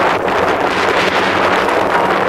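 Steady, loud wind noise buffeting the camera microphone outdoors.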